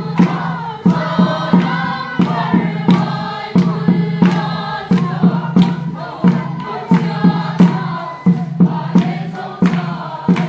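Many voices singing a traditional chant together, with sharp beats about twice a second keeping the rhythm.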